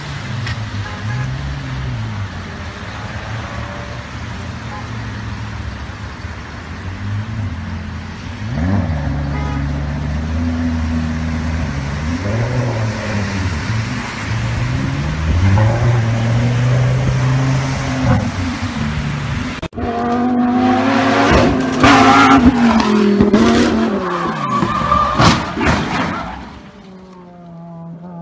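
A sports car's engine revving again and again, its pitch rising and falling, as it drives through flood water. About 20 s in, a cut to another car's engine, louder and revving hard, with tire squeal.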